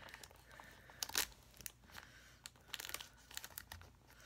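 Shiny plastic gift wrapping crinkling and crackling faintly as it is handled and pried open with a small pointed tool, in scattered short crackles; the loudest is about a second in, with a run of smaller ones near the end.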